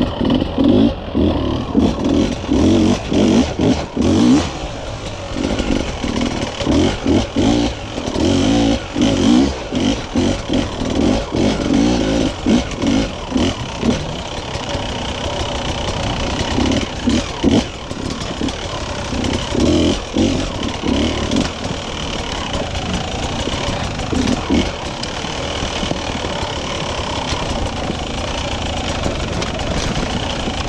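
Enduro motorcycle engine revving in quick, repeated throttle bursts over rocky ground for the first half. It then settles into a steadier run, with a few more bursts between about 17 and 25 seconds in.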